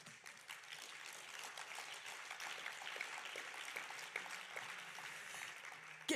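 Light applause from a small, spread-out audience, a patter of many separate claps that swells and then tapers off before the speech resumes.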